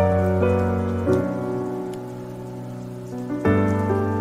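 Slow, soft piano-like background music of held notes, quieting in the middle and coming back with a new chord about three and a half seconds in, with the sound of rain beneath it.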